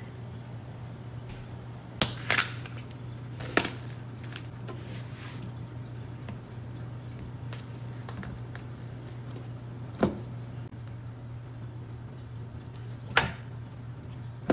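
Raw chicken thighs being handled out of a plastic-wrapped foam tray onto a cutting board: a handful of short, sharp knocks and rustles spread out over a steady low hum.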